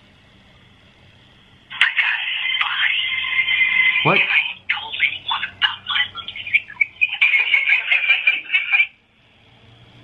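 A voice coming through a phone's loudspeaker, thin and with no low end, talking in quick broken bursts from about two seconds in until near the end. A man breaks in once with a short "What?" about four seconds in.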